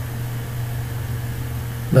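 A steady low hum with no change in level, like a machine or electrical hum picked up by the recording microphone. A man's voice starts just at the end.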